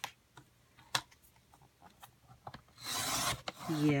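Sliding paper trimmer cutting through a sheet of cardstock: a quick rasping stroke of under a second near the end, after two sharp clicks in the first second as the paper and cutter are set.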